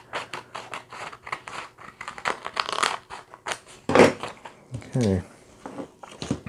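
Scissors cutting through a sheet of paper, a quick run of short snips through the first three and a half seconds, followed by the paper rustling as it is handled.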